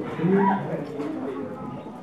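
A man's voice through a hall PA system: a few low, drawn-out vocal sounds in the first second, then fading quieter.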